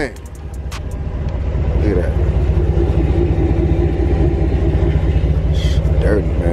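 Vehicle engine idling, a steady low rumble, with a few light clicks in the first second.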